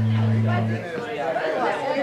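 Steady low electric hum from a guitar amplifier, starting and stopping sharply and cutting off under a second in, followed by people chattering.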